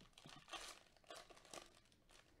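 Faint crinkling and tearing of a Panini Chronicles football card pack wrapper being ripped open by hand, in a few short scratchy rustles.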